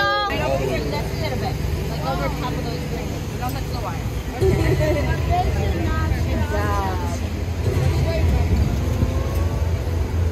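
Outdoor city ambience: people's voices in the background over a steady low rumble that gets louder about four and a half seconds in.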